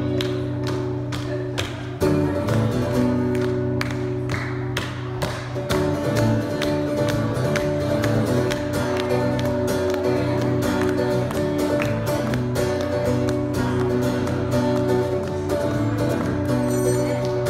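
Acoustic guitar strummed in a steady rhythm, played solo as the instrumental introduction to a song.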